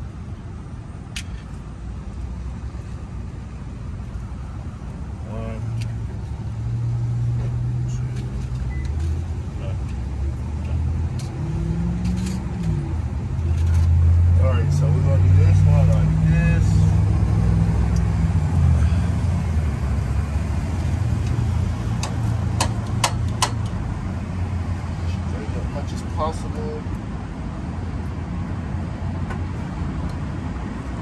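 A motor vehicle's engine running close by, growing louder over several seconds to a peak about halfway through and then slowly fading. Scattered sharp metallic clicks of screws and a wrench as a licence plate is fastened to a truck bumper.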